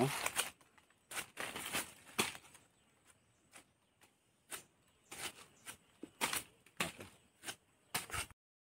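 A knife slicing the tough, prickly skin off a whole pineapple: a string of short, sharp, irregular cutting strokes.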